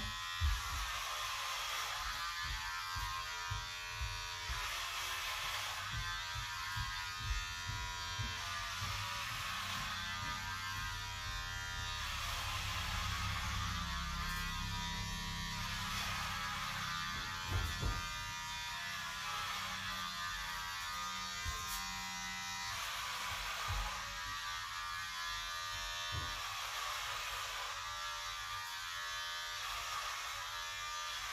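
Electric hair clippers buzzing steadily as they cut a child's hair, the tone rising and falling every couple of seconds as the blades pass through the hair. A few low knocks come through, one pair about two-thirds of the way in.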